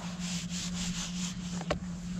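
Palms rubbing across a sheet of paper on a table, smoothing it flat: a dry sliding hiss lasting about a second and a half, then a short knock.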